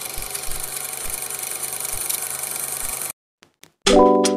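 Old-film countdown intro sound effect: a steady, whirring film-projector hiss with soft low thumps about every half second, cutting off suddenly about three seconds in.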